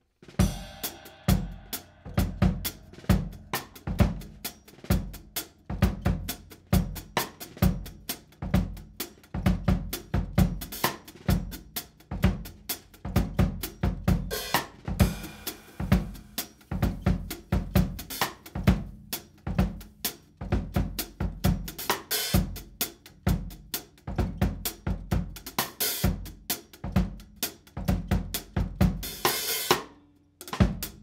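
Drum kit starting a steady groove for an improvised funky blues, with kick drum, snare and hi-hat strokes, coming in suddenly just after the start. Cymbals wash out louder about halfway through and again near the end.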